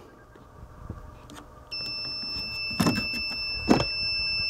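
A continuous high-pitched electronic beep from the milliohm meter starts about halfway through and holds steady, sounding while its test clips are connected across the shorted diodes. Two brief knocks fall during the tone.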